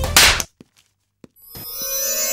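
Background music ends with a short, loud burst of noise, a transition hit, followed by about a second of silence broken by a couple of faint clicks. New music fades in near the end.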